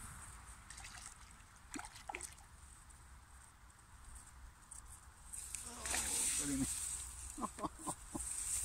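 Water sloshing and dripping at the river's edge as a landing net is moved and lifted, loudest in the last two or three seconds, with a few short splashy strokes near the end. Wind rumbles on the microphone underneath.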